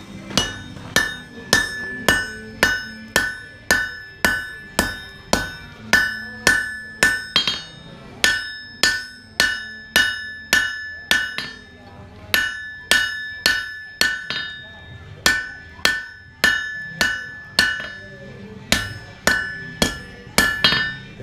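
Hand hammer striking red-hot knife steel on an anvil, about two blows a second with a few short pauses, each blow ringing off the anvil. This is the handle end of a knife being forged.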